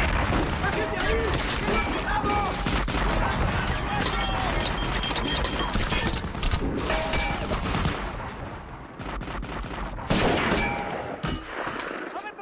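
Dense battle gunfire: a 20 mm anti-aircraft cannon firing in rapid bursts amid small-arms fire and impacts, with shouting mixed in. The firing eases about two-thirds of the way through, then comes back loud near the end.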